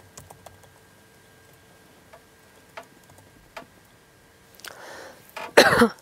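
A woman clears her throat with a breathy rasp and then coughs hard once, near the end. Before that there are only a few faint clicks.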